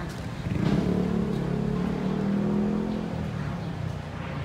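A road vehicle's engine passing close by, coming up about half a second in, running for about three seconds, then fading, over steady street traffic noise.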